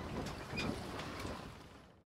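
Faint room noise with a few soft clicks, fading out near the end.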